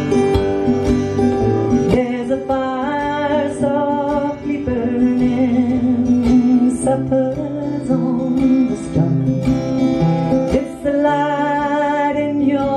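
Acoustic guitar strummed and picked, with a woman singing over it.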